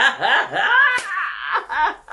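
A woman laughing hard in two long, high, drawn-out stretches, with a short break about halfway through.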